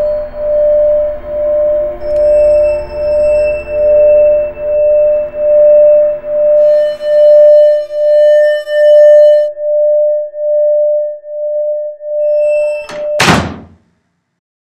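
Ambient background music: one sustained tone pulsing evenly, about three beats every two seconds, with higher held notes coming and going above it. About a second before the end a single loud hit cuts it off.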